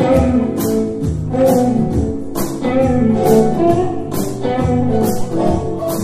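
A live band playing: electric guitar lines over a steady drum beat, with cymbal hits about twice a second.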